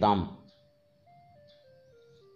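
A man's narration ends about half a second in, leaving faint background music: a simple tune of single notes stepping down in pitch.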